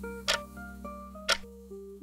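Countdown timer sound effect ticking about once a second, two ticks, over soft background music of held notes.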